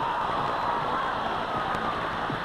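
Studio audience applauding and cheering steadily at a prize reveal.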